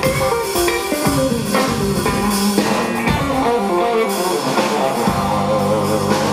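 Live jazz quartet playing: a semi-hollow-body electric guitar leads over drums with cymbals, bass and piano.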